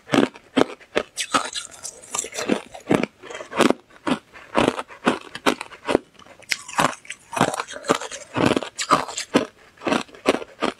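Close-miked crunching of crushed ice being bitten and chewed, a rapid run of sharp, crisp crunches about two a second.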